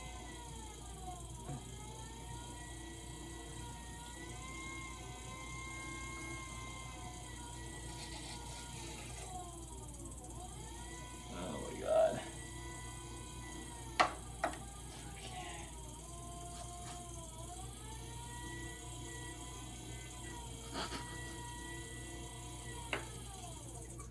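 Electric potter's wheel motor whining steadily with a low hum, its pitch sagging and recovering several times as the wheel's speed changes while clay is thrown on it. A short louder sound about halfway through and a sharp click a couple of seconds later.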